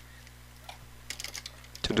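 Computer keyboard: a few quick keystrokes about a second in, over a faint steady low hum.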